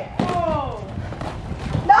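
A basketball dribbled on an asphalt court, thudding a few times, under a falling shout just after the start and more shouting near the end.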